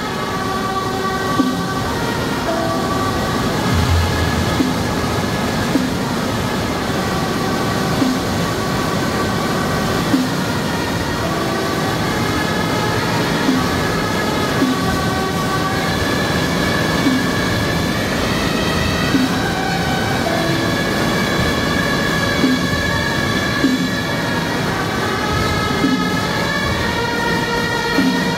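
Suona (Chinese shawm) ensemble playing a melody in long held notes, with a struck percussion beat about every one to two seconds.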